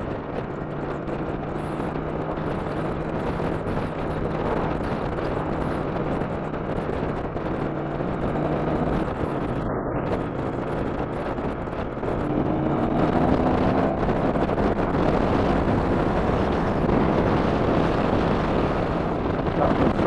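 2007 Triumph America's 865cc parallel-twin engine running under way, with wind rushing over a helmet-mounted microphone. About twelve seconds in, the sound gets louder and the engine note rises as the bike picks up speed.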